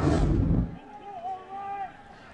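Television broadcast transition whoosh under a station-logo wipe out of a replay: a loud, deep swoosh that lasts under a second and dies away quickly.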